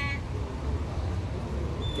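Steady low rumble of town street traffic, with a thin high steady tone coming in near the end.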